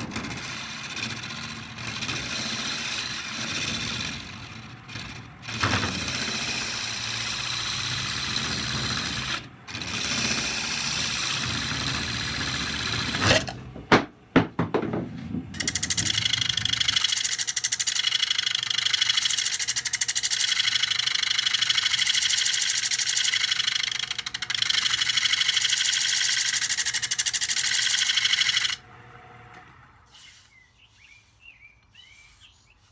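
A wood lathe spinning a large oak blank while a turning gouge cuts it: a rough, hissing scrape of shavings that comes in several stretches with brief breaks and a few louder strokes. From about halfway through, the cutting turns steadier and higher-pitched as the inside of the pot is hollowed.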